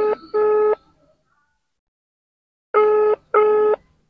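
Phone ringback tone played through a mobile phone's loudspeaker: a double ring of two short beeps close together, heard twice about three seconds apart. It is the sign that the dialled phone is ringing and has not yet been answered.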